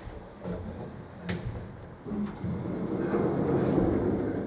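1993 Koch traction elevator car setting off: a sharp click a little over a second in, then a low rumble from the car moving in the shaft, building and getting louder from about two seconds in.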